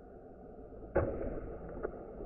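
A skipped stone striking the lake surface about a second in with a sudden splash, followed by water spraying and splashing. The sound is slowed down and deepened by the slow-motion playback.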